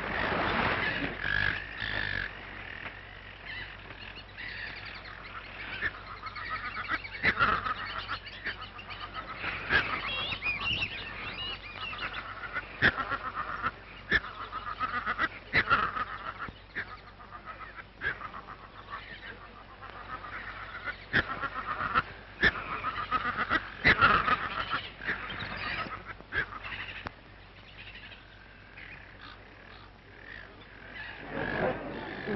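Jungle soundtrack of bird calls: many short, sharp calls repeated throughout, some louder than others.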